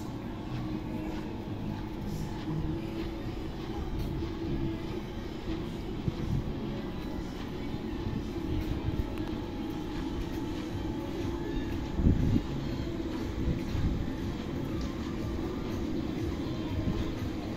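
Wind rumbling and buffeting on the microphone, steady throughout, with a single louder thump about twelve seconds in.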